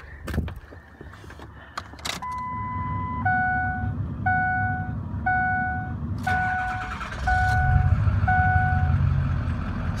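Warning chimes in a 2003 Ford F-350's cab as the key is turned: one longer tone, then a two-note chime repeating about once a second. About seven seconds in, the truck's 6.0 turbo-diesel V8 starts and runs at idle, its rumble clearly louder from then on.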